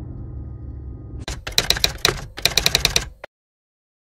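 A low hum, then typewriter key clicks in two rapid runs, cutting off abruptly into silence. This is a typewriter sound effect of the kind laid under a title card.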